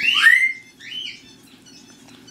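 Blue-and-gold macaw calling: a loud call that slides up and down in pitch at the start, then a shorter second call about a second in.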